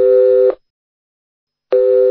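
Telephone call tone: two identical steady electronic beeps, each about two-thirds of a second long, about a second apart.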